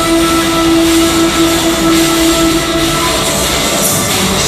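Live heavy rock band playing loud, with one note held for about three seconds over a dense wall of distorted guitar; near the end the band hits a new chord and the drums come in hard.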